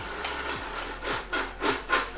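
Popcorn tossed in a large stainless steel bowl to coat it with melted butter and salt. A rhythmic rustling shake, about four strokes a second, starts about a second in.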